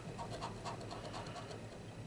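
A coin scraping the scratch-off coating from an instant lottery ticket: a string of faint, quick scrapes.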